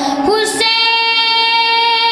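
A boy's solo singing voice: after a quick break and change of pitch about half a second in, he holds one long, steady note.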